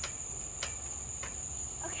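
Crickets trilling steadily in a single high, unbroken tone, with three short knocks about half a second apart.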